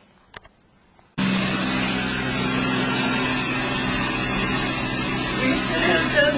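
A carpet-cleaning extraction machine's motor starts running abruptly about a second in, then holds a loud, steady hum and hiss.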